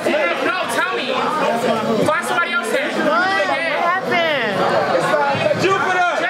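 Crowd of many people talking over one another in a large room, with a few voices raised in high, sliding exclamations about three to four seconds in.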